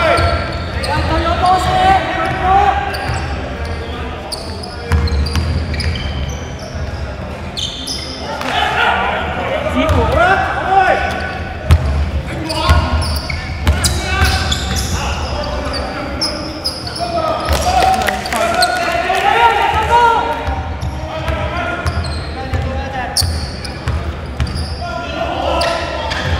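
Basketball game on an indoor hardwood court: the ball bouncing and players' voices calling out, echoing in a large gymnasium hall.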